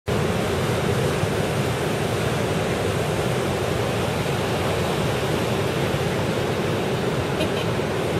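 Ocean surf breaking along the shore: a steady, even rush of noise with no gaps between waves.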